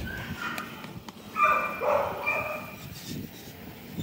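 A dog giving short high-pitched cries, two of them, about a second and a half and two seconds in.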